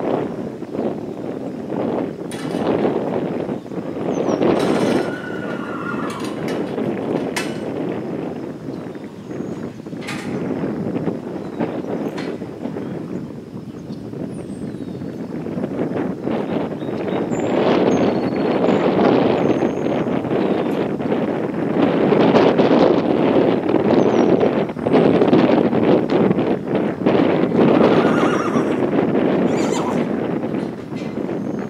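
A horse whinnying briefly, about five seconds in and again near the end. Soft hoof steps on dirt sound between the calls, over gusting wind on the microphone.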